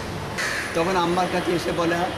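A man speaking, with birds cawing in the background.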